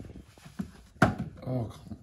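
A single sharp knock about a second in, the loudest sound, from the gift and its packaging being handled, followed by a man's short exclamation.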